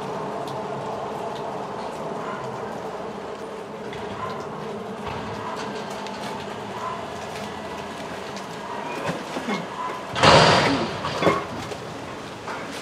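Front-loader garbage truck's engine and hydraulics running steadily as its forks raise a dumpster over the cab. About ten seconds in, a loud crash as the dumpster is tipped and its load falls into the hopper, followed by a couple of metal clanks.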